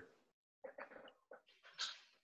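Near silence, broken by a few faint, short sounds about halfway through and again near the end.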